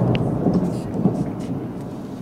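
Festive salute fireworks booming: one loud report right at the start, then a long rolling rumble that slowly fades, with a couple of smaller bangs in it.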